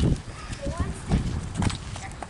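A horse's hooves clip-clopping on asphalt as it walks, a few separate steps.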